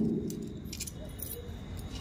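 A ring of keys jingling, with a few light metallic clinks, as a padlock on a metal door hasp is being locked.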